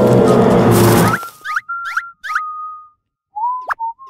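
Dramatic background music that cuts off about a second in, followed by cartoon boing-like sound effects: a held whistle-like tone broken by several quick upward chirps, then after a short pause a second, slightly lower run of the same near the end.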